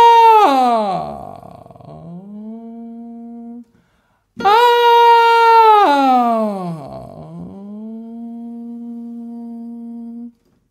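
A man's singing voice doing a vocal exercise on an open "ah": a loud held high note that slides steeply down to a quieter, steady low note, done twice. On the low note he yawns, the larynx-pharynx adjustment meant to give a darker low tone.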